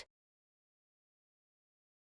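Silence: the sound track is blank, with no sound at all.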